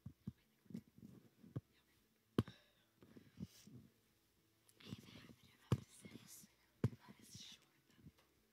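Hushed whispering and rustling from a seated audience during a pause, with a few sharp knocks or thumps, three of them standing out as the loudest sounds.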